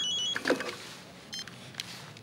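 Mobile phone ringing with a warbling two-tone electronic ringtone that cuts off about a third of a second in as the call is answered. A short electronic beep follows about a second later, then a faint click.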